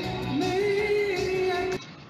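Live concert recording of a male singer with backing music, holding a high sung note that slides up about half a second in and then stops abruptly near the end.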